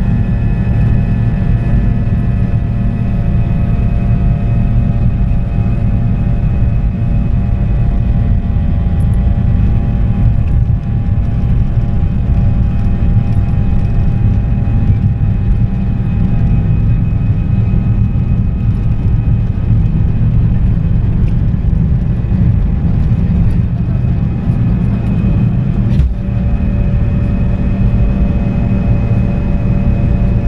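Fokker 100 cabin noise during the climb just after take-off: a steady, loud rumble from the rear-mounted Rolls-Royce Tay turbofans, with steady engine whine tones on top. About 26 seconds in there is a single click, and the engine tones shift slightly after it.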